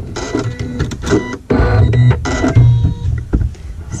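Embroidery machine stitching a seam: the needle makes rapid repeated strokes over the steady tones of its motors.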